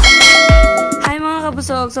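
A bright bell chime rings out for about a second over the last beat of electronic intro music: the notification-bell sound effect of a subscribe-button animation. Then a voice starts speaking.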